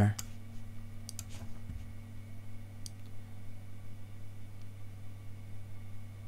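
A few computer mouse clicks, a pair about a second in and one more near three seconds, over a steady low hum.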